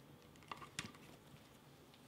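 Near silence: room tone with two brief, faint clicks close together, under a second in, from hands handling the rubber gas mask and its straps.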